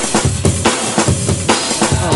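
Music with a fast, steady drum-kit beat: bass drum and snare hits several times a second.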